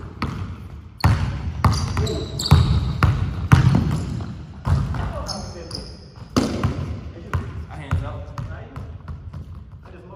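A basketball bouncing on a hardwood gym floor, irregular sharp thuds that echo in the hall and thin out over the last few seconds. Sneakers give short squeaks on the floor a few times.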